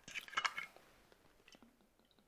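Screw cap of a glass vodka bottle being twisted open: a short crackle of clicks in the first half second, then a couple of faint ticks.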